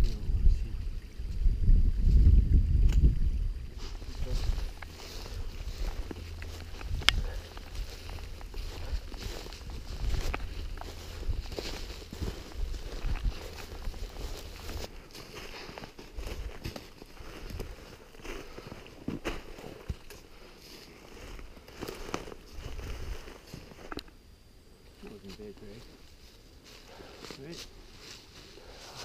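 Footsteps crunching through snow-covered dry leaves while a black bear carcass is dragged on a rope over the forest floor, with scattered snaps and rustles. A heavy low rumble on the microphone fills the first few seconds, and the rustling grows quieter in the second half.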